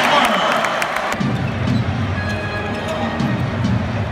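Arena crowd noise during an NBA basketball game, loudest in the first second, with the knocks of a basketball bouncing on the hardwood court. Music and voices come in about a second in.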